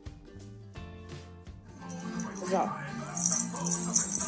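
Background guitar music, then a small jingle bell shaken by hand from about three seconds in, its bright ringing the loudest thing near the end.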